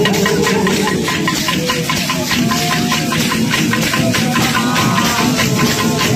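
Bumba-meu-boi percussion: wooden matraca clappers struck together in a fast, even clacking, about four to five strokes a second, over steady drumming, with a few voices from the crowd.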